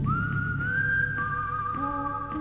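Music led by a whistled melody: a note slides up and is held, and a second, lower whistled line joins about a second in, over a low backing.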